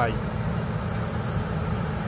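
Steady low rumble of an engine running, like a vehicle idling.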